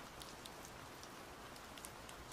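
Faint, steady rain ambience: a soft even hiss with scattered light drop ticks.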